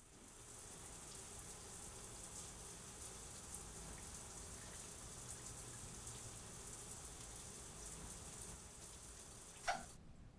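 Shower spray running steadily, a hiss of water falling on tile. Near the end there is one short sharp sound as the shower's single-handle valve is turned, and the spray stops.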